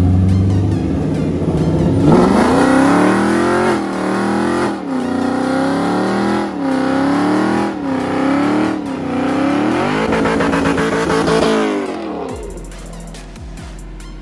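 Chevrolet Camaro SS 1LE's 6.2-litre V8 at full throttle on a two-step launch with the rear tyres spinning and smoking, the revs surging up and sagging again over and over as the tyres fail to hook. It starts about two seconds in and dies away near the end.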